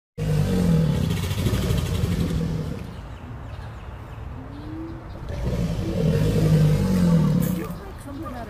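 American alligators bellowing: two long, deep rumbling bellows, the first running to nearly three seconds in, the second from about five seconds to nearly eight seconds in.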